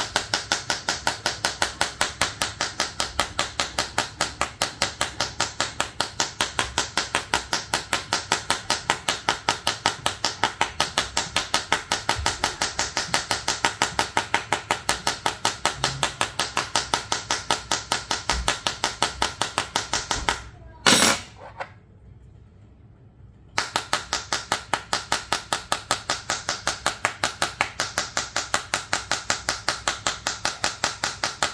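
Metal tool tip tapping rapidly on the glass screen of a Samsung Galaxy S23 FE, about four to five sharp taps a second. Near two-thirds of the way through there is one louder knock, then the taps stop for about two seconds before starting again at the same pace.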